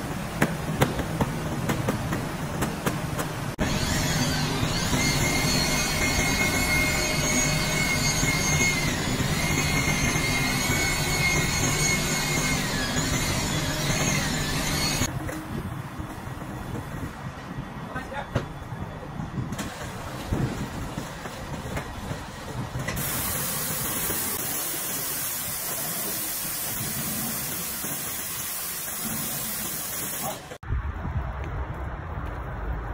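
Workshop noise with a wavering whine, then, for the last several seconds, a pressure-washer jet hissing steadily as it sprays a car's bodywork.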